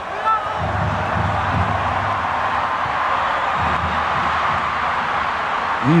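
Stadium crowd at a football match, a steady din of many voices heard through a TV broadcast.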